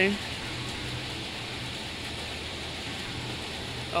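Steady, even hiss with a faint low hum underneath and no distinct events: outdoor background noise.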